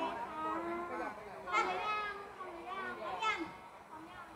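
Only speech: high-pitched young women's voices talking animatedly through stage microphones and a PA, with two louder, higher exclamations about a second and a half and three seconds in.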